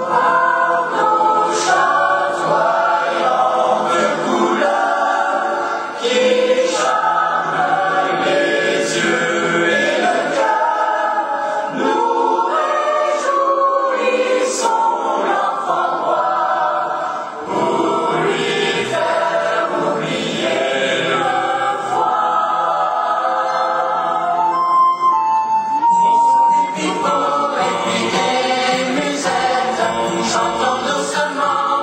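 A choir of boys' and men's voices singing a song together in harmony through stage microphones.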